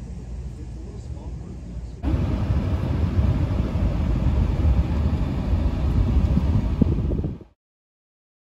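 Quiet outdoor background for about two seconds. Then the steady low rumble of a moving car heard from inside its cabin starts abruptly and cuts off to silence near the end.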